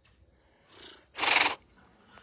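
Tiger hissing once, a short sharp rush of breath lasting under half a second, preceded by a fainter breath.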